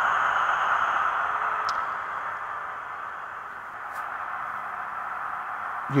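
Hornby HM7000 sound decoders in an HST model's power car and dummy car playing a diesel engine start-up through their small onboard speakers. The tinny, hissy engine sound eases down over the first few seconds and settles to a steady idle.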